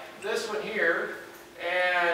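A person speaking, with the words not made out; the voice's pitch rises and falls in short phrases with brief pauses.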